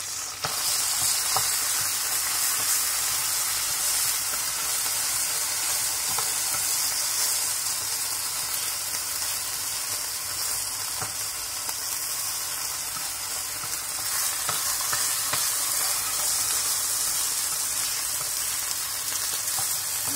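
Thin slices of marinated beef sizzling in hot oil in a nonstick frying pan over high heat, a steady hiss that gets louder about half a second in. A wooden spatula now and then clicks against the pan as the slices are moved and turned.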